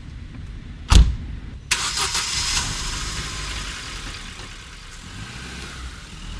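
A car door slams shut about a second in. Then the natural-gas minivan's engine starts and runs, loud at first and easing off over the next few seconds.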